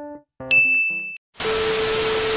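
Editing sound effects: a last short keyboard note, then a bright electronic ding about half a second in. From about a second and a half comes a burst of TV static hiss with a steady low beep under it, a test-pattern effect.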